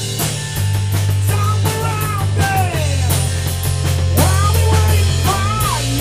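Rock band playing an instrumental passage on drum kit, electric bass and electric guitar, with long held low bass notes under high notes that slide and bend up and down.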